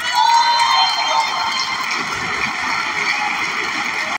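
A crowd applauding steadily, with voices cheering over the clapping in the first second or so.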